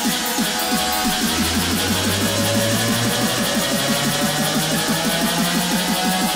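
Loop station beatbox performance: layered vocal loops with a deep bass tone that steps upward in pitch and a fast, even run of short falling sounds, about eight a second, under a dense bright high layer.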